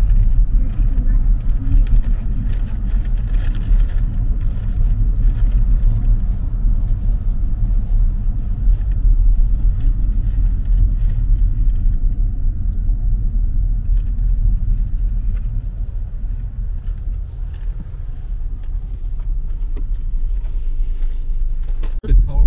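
A car's road and engine rumble heard while driving, steady and low throughout and easing slightly in the second half.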